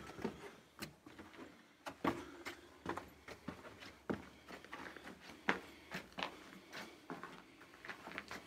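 Irregular footsteps scuffing on a gritty rock cave floor strewn with loose stones, a string of short scrapes and clicks.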